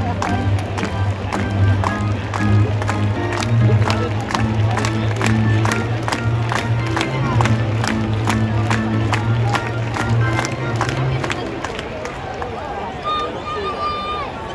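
Ballpark PA music with a steady beat and a heavy bass line, playing over crowd chatter; the music stops a little over three-quarters of the way through, leaving the crowd murmur.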